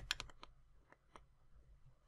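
Faint clicks and taps of a stylus on a pen tablet as a short word is handwritten: a quick cluster of small clicks in the first half second, then a few scattered ticks.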